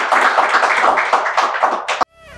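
Studio audience clapping together, a dense patter of many hands that cuts off suddenly at the end.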